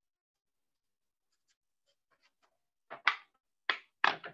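Near silence for about three seconds, then a few short, sharp clicking and rustling noises near the end.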